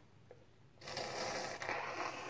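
A person blowing their nose hard into a paper towel, clearing salt water from a nasal rinse. One long blow starts about a second in.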